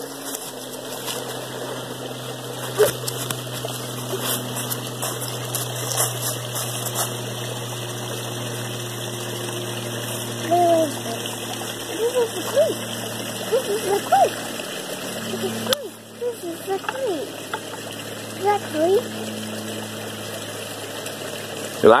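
Footsteps rustling through dry leaf litter over a steady low hum and the wash of a creek; from about ten seconds in, short rising and falling snatches of voice.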